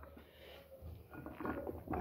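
Faint handling sounds of a soft plastic bottle as cooked rice is pushed out of it with a spoon, over a low hum.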